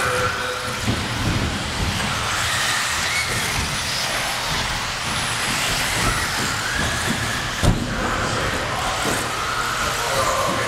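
Several 1/10-scale 4WD electric RC buggies racing. The motors whine, rising and falling as the cars speed up and slow down, over a clatter of tyres and chassis on the track. There is one sharp knock about three-quarters of the way through.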